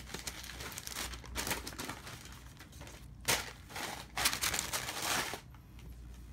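Stiff, textured shoebox wrapping paper crinkling and rustling in repeated bursts as it is pulled aside and out of the box by hand, with a sharper crackle about halfway through.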